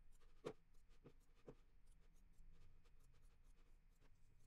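Near silence: room tone with a few faint, short clicks of a computer mouse, about half a second, one second and one and a half seconds in.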